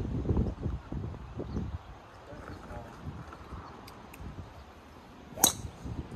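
A golf club striking a ball off the tee: one sharp crack near the end, a well-struck shot that sounded good.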